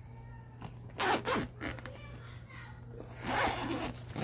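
Zipper on a fabric backpack being pulled open, in two runs: one about a second in and another a little after three seconds, opening the main compartment.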